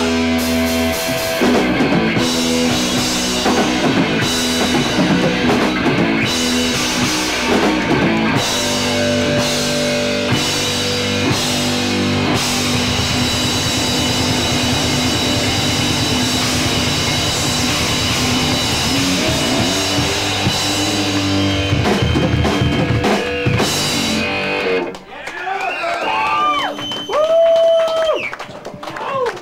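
Live rock band playing loud electric guitar and drums, an instrumental stretch with no singing. The music stops about 25 seconds in, and shouting voices follow.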